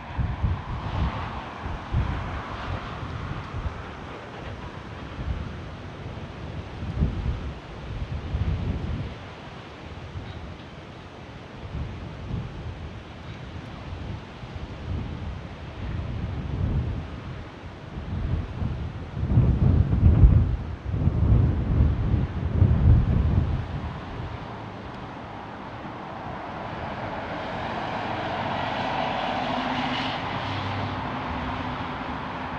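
Gusts of wind buffet the microphone, loudest around twenty seconds in, over the distant hum of an Airbus A350-900's Rolls-Royce Trent XWB turbofans on final approach. Near the end the engine noise swells as the airliner touches down and rolls out on the runway.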